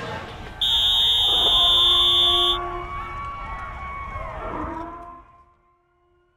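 A loud, steady electronic buzzer sounds for about two seconds, starting under a second in and cutting off abruptly. Beneath it run background noise and a few held tones, all fading out near the end.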